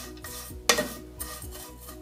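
A metal ladle stirring and scraping vermicelli, nuts and raisins around a nonstick pan as they toast in ghee, with a light sizzle. There is one louder scrape of the ladle about a third of the way in.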